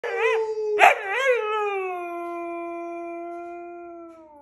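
Siberian husky howling: a wavering start with a short, loud burst just under a second in, then one long steady note that slowly fades.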